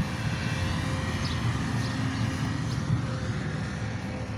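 Steady low rumble of a running engine, with a constant faint hum. A few faint bird chirps sound over it.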